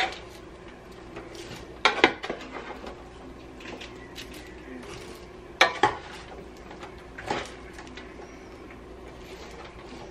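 A metal spoon stirring caramel-coated popcorn in a roasting pan. Sharp clacks of the spoon on the pan come at the start, about two seconds in, near six seconds and a lighter one past seven seconds, with the soft rustle of popcorn turning between them, over a steady low hum.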